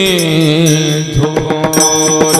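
Devotional kirtan singing: a male voice holds a long, slightly falling note, and about a second in small brass hand cymbals (taal) and pakhawaj drum strike up a steady rhythm over a continuous drone.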